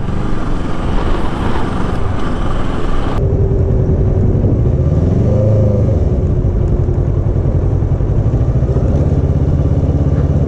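Motorcycle riding sound: wind rush over the engine of a Kawasaki Ninja 650 parallel-twin sportbike. About three seconds in the sound changes abruptly to a steadier engine drone, whose pitch rises and falls briefly around the middle.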